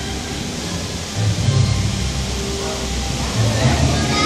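Ride soundtrack in a dark ride: music and effects from the ride's speakers over a steady noisy rumble, with low swells about a second in and again near the end.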